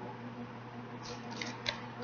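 A paperback being closed and set aside: a brief rustle of paper and cover, then a sharp light tap about a second and a half in.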